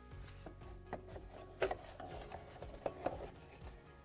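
Plastic refrigerator drain pan being lifted off the top of the compressor: a few light knocks and scrapes of plastic on metal, over soft background music.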